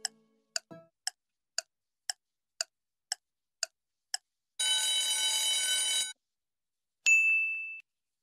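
Quiz countdown timer sound effect: sharp ticks about two a second for about four seconds, then a steady buzzer for about a second and a half as time runs out, then a single bright ding that fades.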